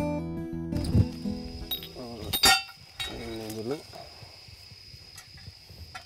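Acoustic guitar music cuts off under a second in, giving way to rainforest ambience: a steady high insect drone with a few sharp clicks and knocks, one loud, and a short pitched call falling in pitch.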